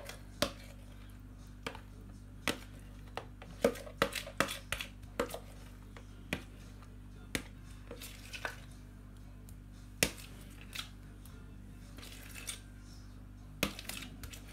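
Spoon knocking and scraping against a plastic tub and jug while thick dip is spooned in: irregular sharp clicks and taps, a few louder knocks among them, over a steady low hum.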